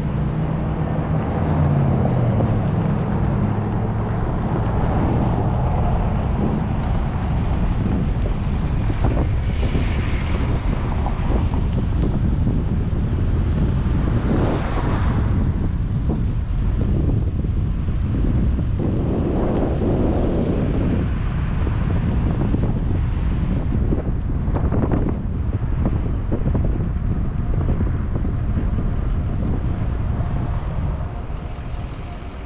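Car driving at low speed, its engine and tyre rumble overlaid by heavy wind buffeting on the microphone. An engine hum is clearest in the first few seconds.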